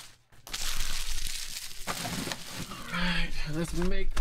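Foil trading-card pack wrappers crinkling as they are handled. A voice starts about three seconds in.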